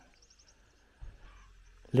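Near silence: a bird's faint quick high chirps in the first half second, then a faint low rumble from about a second in.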